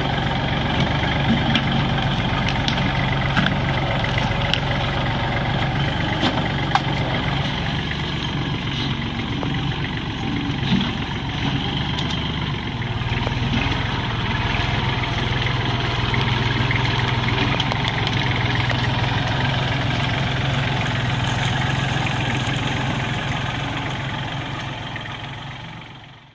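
Diesel engine of a 38 hp Kubota compact tractor with front-end loader running steadily while the tractor is driven, with scattered small clicks and knocks; its low note shifts a little about halfway through, and the sound fades out near the end.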